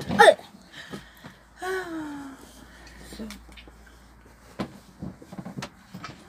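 A person's short vocal sound at the start, then a falling hum-like voice sound about two seconds in, followed by a few light clicks near the end.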